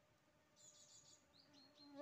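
Near silence, with faint, high-pitched insect chirping: a short, finely pulsed chirp about half a second in, and a thin, high note a little before the end.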